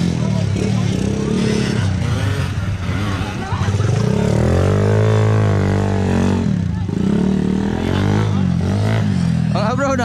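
Off-road motorcycle engines revving on the race track, their pitch rising and falling, with one long rise and fall around the middle. A voice comes in near the end.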